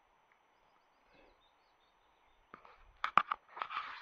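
Quiet open-air ambience with faint bird chirps for the first couple of seconds. Then, from about two and a half seconds in, a run of sharp clicks and a crunching rustle: handling noise as the camera is picked up and swung round.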